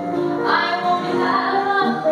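Women's vocal group singing a song in harmony, several voices holding long notes together over piano accompaniment.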